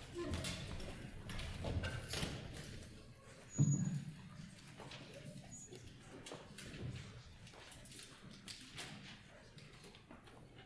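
Footsteps on a wooden stage with scattered knocks and shuffling while a band settles between pieces, the loudest a single thump about three and a half seconds in, with faint talk underneath.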